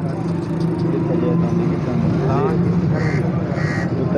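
Steady low drone of an idling engine under scattered voices of people talking.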